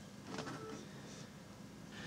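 Faint whir of an Acer Veriton desktop PC's fans as it powers on, with a brief low tone about half a second in.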